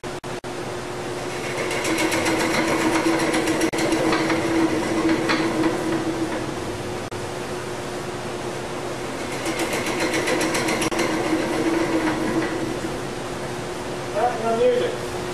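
Wood lathe running with a steady hum while a hand-held turning tool cuts the spinning workpiece. The cutting grows louder twice, a few seconds in and again past the middle, with a rapid, even ticking as the tool meets the wood.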